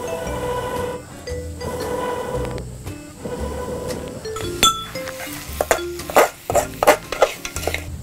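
Background music with a steady beat, over a metal spatula scraping and clinking against a steel pan as food is stirred; a run of sharp clinks comes in the second half.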